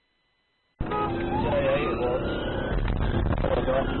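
Police car siren wailing in one slow rise and fall over loud engine and road noise, heard from inside the pursuing police car; the sound cuts in suddenly about a second in.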